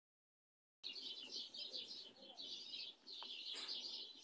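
Many small birds chirping in a rapid, continuous chatter, faint. It starts just under a second in.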